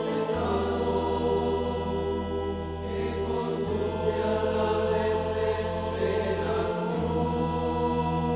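A choir singing a slow hymn over sustained accompaniment, the bass note changing about every three seconds.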